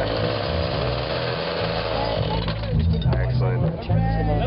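Motor-driven blender churning a jar of margarita with a loud, steady whir. The mixing noise falls away about two and a half seconds in, while a low hum carries on.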